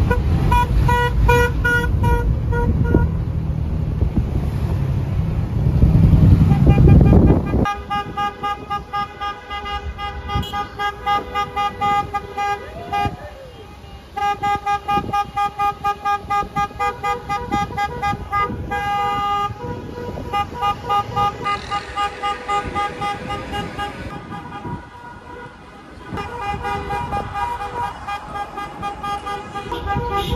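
Car horns beeping in a celebratory motorcade: several horns of different pitches honking in a steady rhythm of about two beeps a second. For the first several seconds the rumble of the moving car and wind is louder, and the horns take over after that.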